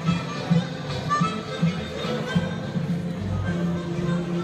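Music with a steady beat, played back by a Scopitone video jukebox.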